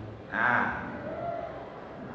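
A short vocal sound about a third of a second in, followed by a faint low murmur, in a pause between spoken phrases; otherwise low room tone.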